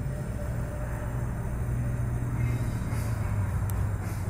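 Steady low drone of a vehicle engine running nearby, swelling slightly about a second in.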